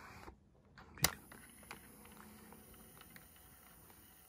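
A sharp click from a Sony WM-FX45 Walkman's control button about a second in. It is followed by the faint steady whirr of the Walkman's tape transport motor running with no cassette loaded, now turning on a new rubber drive belt.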